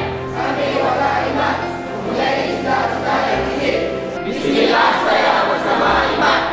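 A group of people singing a song together in chorus over a backing track with sustained bass notes.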